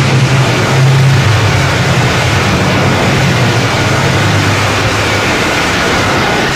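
Loud, harsh noise that starts abruptly, with a steady low hum underneath.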